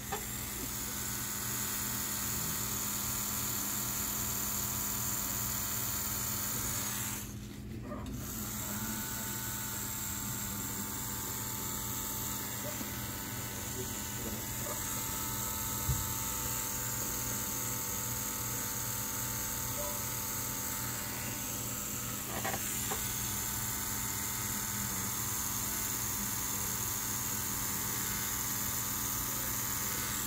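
Tattoo machine buzzing steadily as it needles skin. It cuts out for about a second some seven seconds in, then runs again.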